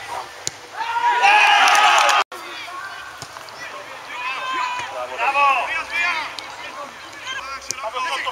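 Men's voices shouting and calling across an outdoor football pitch. A loud burst of several voices together comes about a second in and cuts off abruptly, followed by more scattered shouts and a couple of sharp knocks.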